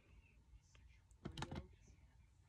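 Near silence, with a few soft, quick clicks a little past the middle.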